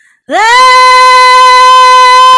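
A young woman's voice singing one long, very loud note. It slides quickly up into pitch and is then held steady. It is the prepared attack of a song's first note, sustained for four beats as a vocal exercise, and the coach hears it as landing straight in the right place.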